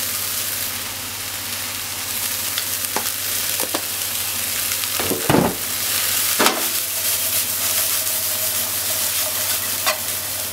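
Chopped Japanese leek (negi) sizzling in oil in a nonstick frying pan, a steady hiss. The stirring utensil scrapes and knocks against the pan several times; the loudest knocks come about halfway through and shortly after.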